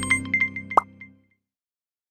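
Logo-animation jingle ending: music fading out under a few quick chiming notes, with a short rising pop sound effect just under a second in, then silence.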